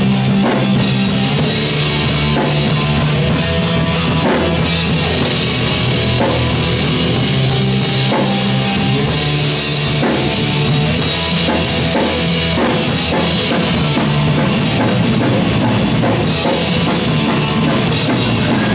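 A live rock band playing loud: electric guitar, bass guitar and a drum kit together.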